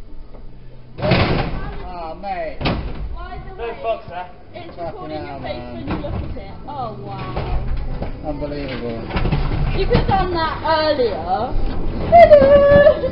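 Indistinct voices of a few people close by, with two sharp knocks about one and three seconds in.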